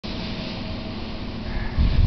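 Wind buffeting the microphone outdoors at the foot of a 1.6-megawatt wind turbine, with a faint steady hum that fades out about halfway through. The low rumble swells near the end.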